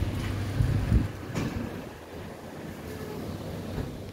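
Low rumble and a couple of dull thumps in the first second or so from a hand-held phone being moved, then faint steady background noise.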